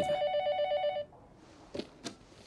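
Electronic telephone ringing: a trilling two-tone ring that stops about a second in.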